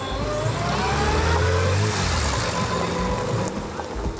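Historic car's engine accelerating, its pitch rising for about two seconds and then holding steady.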